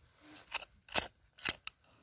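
A thin metal tool scraping and jabbing into gravelly soil and pebbles: four short, sharp scrapes, the last two close together.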